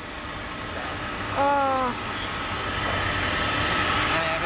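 Jet airliner engine noise across the airport: a steady rushing noise with a thin high whine, growing louder over the second half. A short hummed vocal sound comes about a second and a half in.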